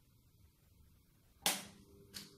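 Near silence, then one sharp snap about a second and a half in.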